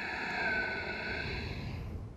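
One long, slow, deep breath picked up close on a headset microphone. It is a single unbroken breath of about three seconds that stops just before the end.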